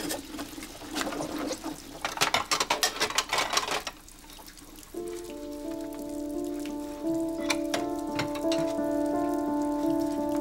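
Dishes clinking and clattering under running water at a kitchen sink as they are washed by hand. About five seconds in, soft background music of slow, held notes comes in.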